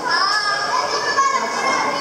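A child's high-pitched voice calling out for over a second, over the chatter of other visitors.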